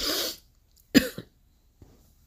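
A woman coughs, then makes a short throat-clearing sound about a second later.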